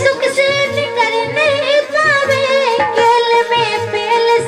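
A woman singing a Bundeli folk song in a wavering, ornamented melodic line, with instrumental accompaniment of held steady tones and a low drum beat about three times a second.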